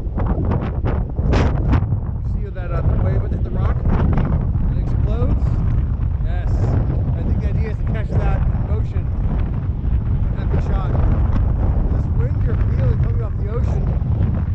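Strong wind buffeting the microphone: a loud, constant low rumble that drowns out most of a man's voice talking underneath it.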